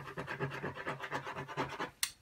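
A coin rubbed in rapid back-and-forth strokes across a paper scratch-off lottery ticket on a table, scraping off the coating over the play area; the scratching stops just at the end.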